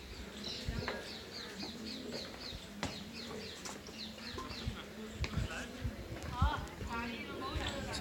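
A bird singing a run of short, quick falling notes, about three or four a second, for a few seconds, with faint distant voices behind.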